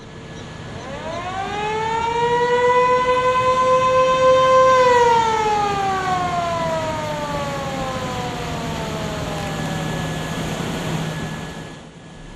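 A motor-driven siren winds up to a steady wail, holds it for a few seconds, then winds slowly down over about four seconds and fades out. A low steady hum runs underneath.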